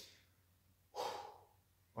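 A young man's exasperated sigh: one breathy exhale about a second in, fading away, after a faint breath at the start.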